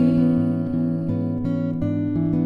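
Fingerpicked acoustic guitar playing a steady, even picking pattern of bass notes and chord tones.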